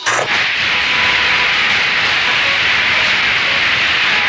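Loud, steady TV-static hiss, like a detuned television, cutting in abruptly as a sound effect.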